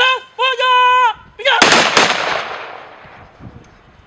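A shouted drill command, then a ceremonial volley of rifle shots fired into the air about a second and a half in. A sharp crack is followed closely by a second, straggling crack, and the sound rings out in a long, fading echo.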